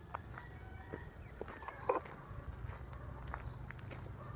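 Footsteps on a dirt and gravel road while walking: scattered short crunches, one louder about two seconds in, over a steady low rumble.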